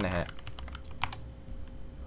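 Computer keyboard typing: a few light key clicks, then one sharper keystroke about a second in.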